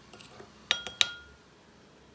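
A small plastic spoon stirring a thick clay face-mask paste in a glass bowl, with a few soft scrapes and then three quick clinks against the glass, each followed by a brief ring, the last the loudest.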